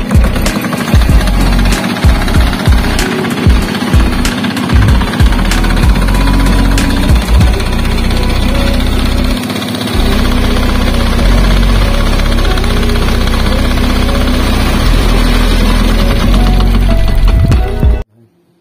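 Small engine driving a sugarcane juice crusher's rollers, running with a rapid knocking beat. About ten seconds in it becomes louder and steadier.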